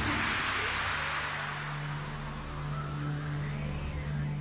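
Cinematic title-card sound design. A noisy whoosh swells in suddenly and slowly fades away over a steady low drone.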